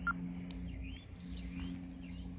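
Outdoor garden ambience: small birds chirping faintly over a steady low hum and a low rumble.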